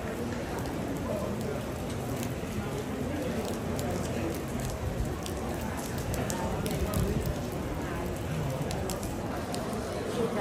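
Steady rain falling and dripping, with indistinct voices of people in the background and occasional small clicks of drops.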